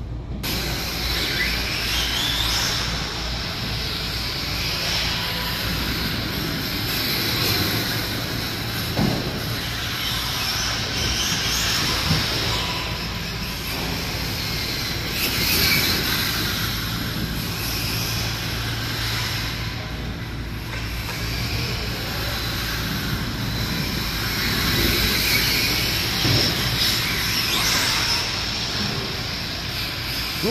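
Electric RC cars running laps, their motors whining up and down in pitch over a steady rush of tyre noise. A steady low hum sits underneath.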